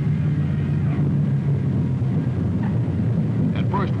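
Piston-engined propeller aircraft droning steadily in a low, even tone as the plane rolls out after a radar-guided landing.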